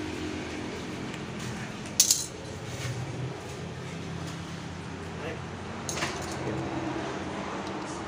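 Two sharp metallic clicks of small hand tools being handled on a hard floor, the first about two seconds in and loudest, the second weaker about four seconds later, over a steady low hum.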